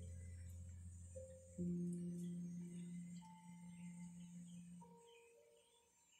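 Deep, sustained chime-like ringing tones. One low note gives way to a louder, higher one about one and a half seconds in, with fainter high notes over it, and all of them fade slowly away near the end.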